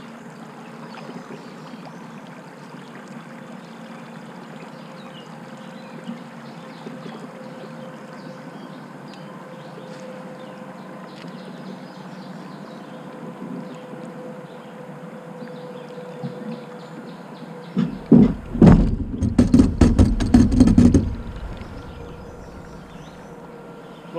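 Steady hum of a Torqeedo electric kayak outboard running, with water noise under the hull. About eighteen seconds in, a loud run of deep knocks and scraping lasting about three seconds as the kayak's hull and rudder bump and grind over river rocks.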